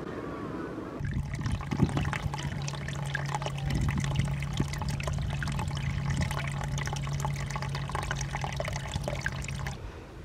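Rock-pool seawater trickling and sloshing, full of fine crackling, over a steady low hum that starts about a second in and stops just before the end.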